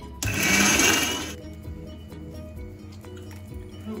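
An electric mixer grinder runs in one short burst of about a second, grinding coconut, dried red chillies and doddapatre leaves into a paste, over background music with steady notes.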